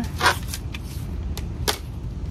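Handling noise as a white plastic skylight inner frame is set onto a thin tin-look ceiling panel: a short clatter shortly after the start, a few light ticks, and a sharp click near the end, over a low steady rumble.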